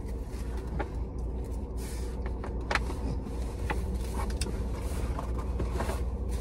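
Steady low hum inside a parked car's cabin, from the idling engine or the climate fan. Scattered faint clicks and smacks of chewing sit over it.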